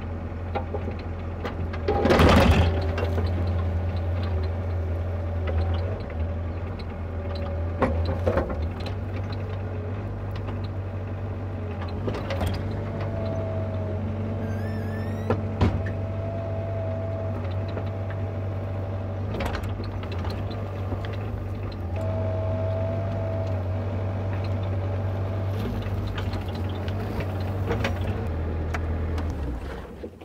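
Bobcat E42 mini excavator's diesel engine running steadily while it digs a trench, with a whine from the hydraulics as the arm works under load twice, and knocks of the bucket in soil and stones, the loudest about two seconds in. The engine shuts off near the end.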